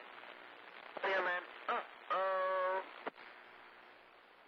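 A CB radio receiving another station: brief, unclear words and then a drawn-out voice sound come through over steady radio static. After that the transmission ends with a click about three seconds in, leaving only static hiss.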